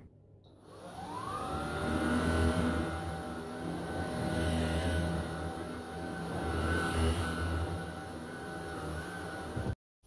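Cordless stick vacuum cleaner running on carpet: the motor spins up with a rising whine about a second in, then holds a steady pitch while the loudness swells and fades as the head is pushed back and forth. The sound cuts off suddenly near the end.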